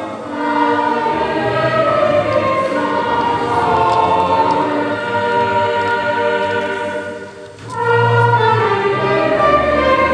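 A mixed choir singing in sustained chords, accompanied by an orchestra. Near the end the music drops briefly for a breath between phrases, then comes back in louder with a fuller bass.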